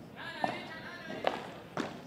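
Padel rally: about three sharp knocks of the ball off rackets and court, less than a second apart.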